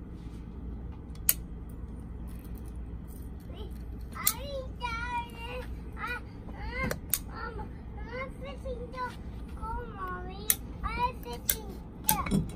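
Several sharp clicks from a Newborn caulking gun's trigger as it is squeezed to run a bead of silicone into a PVC end cap. A high-pitched voice talks in the background through most of it.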